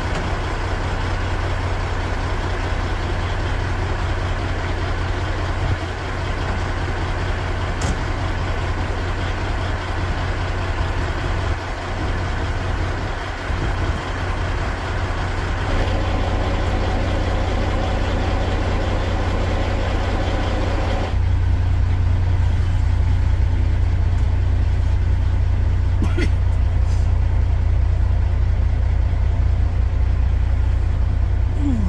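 Kenworth semi truck's diesel engine idling steadily, a deep even hum. About two-thirds of the way through, the sound suddenly turns duller and heavier in the bass, as heard from inside the cab.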